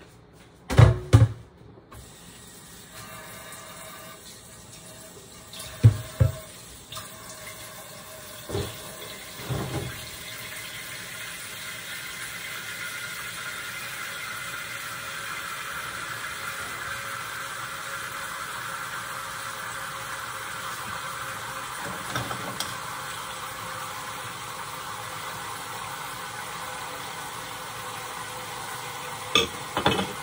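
Marinated pork tipped into a wok with a couple of sharp knocks, then the soy-sauce marinade sizzling and bubbling in the hot pan, growing louder over the first fifteen seconds or so and then holding steady. A few more knocks come about six and ten seconds in.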